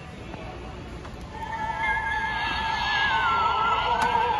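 Gemmy animated Halloween figure's sound chip playing a high, warbling sung tone with heavy vibrato, coming in about a second and a half in, getting louder and dipping in pitch near the end.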